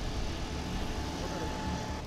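A Toyota Land Cruiser 40-series 4WD's engine idling with a steady low rumble.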